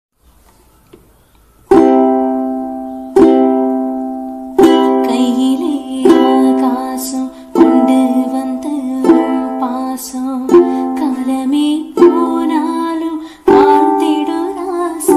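Ukulele strummed in single ringing strokes about every second and a half, after a near-silent opening. A woman's voice begins singing the melody over the strums about five seconds in.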